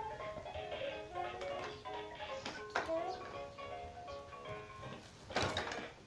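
Electronic tune from a baby's musical activity walker: a simple melody of short, steady beeping notes stepping up and down. A brief noisy burst comes near the end.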